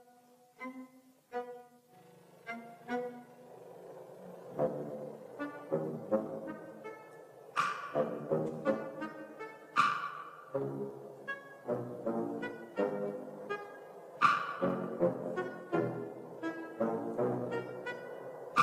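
Orchestral film score with brass and low strings playing short, detached notes. It starts sparse and quiet, then grows louder and busier, with sharp accented hits about every two to four seconds in the second half.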